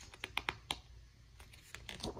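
Picture-book page being turned by hand: a run of short paper clicks and crackles, one cluster in the first moments and another near the end.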